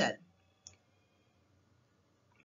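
A spoken word trails off into near silence, broken by a single faint click about two-thirds of a second in.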